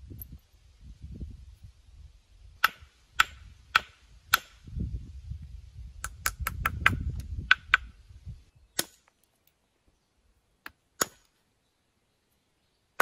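Ball end of an antler billet striking the edge of a limestone cobble, knocking off flakes to rough out a serrated stone chopper. The sharp clacks come about four times at a steady pace, then in a quick run of about eight, then a few more near the end, over a low rumble during the first part.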